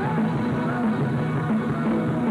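Rock band playing live, with electric bass and guitar in a continuous, loud mix.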